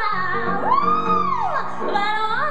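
A woman singing live with a small jazz band that includes an upright bass. About half a second in she slides up into a long held note that arches and falls back down.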